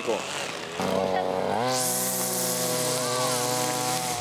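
Petrol string trimmer engine idling, then revving up about one and a half seconds in and holding steady at high speed.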